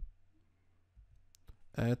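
A few faint, short clicks of a computer mouse working the chess software, about a second in, against near silence.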